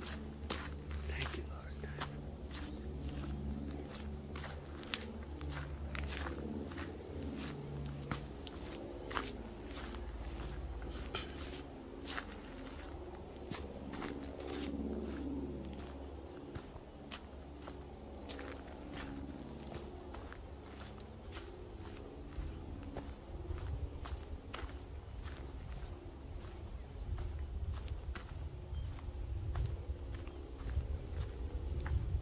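Footsteps of one person walking on a damp dirt bush track, one or two steps a second, over a low rumble.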